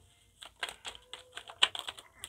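A deck of Uno cards being shuffled by hand: a quick, irregular run of light clicks as the cards flick and slap against each other, starting about half a second in.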